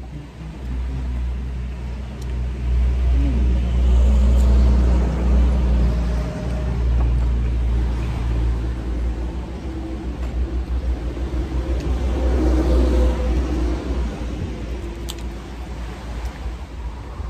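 A motor vehicle engine running nearby: a low, steady rumble that grows louder a couple of seconds in and eases off after about nine seconds.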